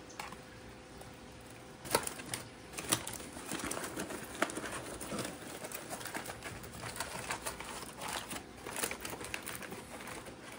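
Aluminium foil crinkling and crackling as gloved hands fold and crimp it around racks of sauced ribs, in an irregular run of sharp crackles, the loudest about two and three seconds in.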